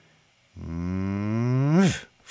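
A man's voice holding one long low vocal tone that slowly rises in pitch, then sweeps sharply upward and cuts off just before the end.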